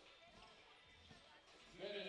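Faint thuds of a basketball being dribbled on the court, over quiet court ambience.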